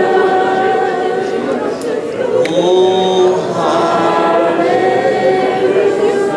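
Congregation singing together in worship, many voices holding long notes that shift in pitch about halfway through.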